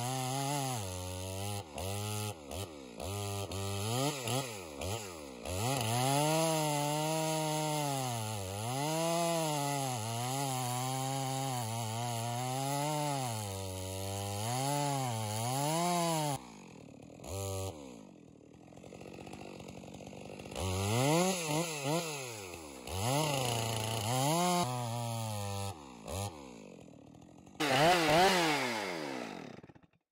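Stihl MS462 two-stroke chainsaw, its square-ground chain ripping lengthwise along the grain of a white fir log. The engine pitch rises and falls over and over as the chain digs in and frees. It drops low for a few seconds past the middle, then comes back in short revs and a quick rev near the end. The chain is cutting aggressively but plugging up really fast with long noodles.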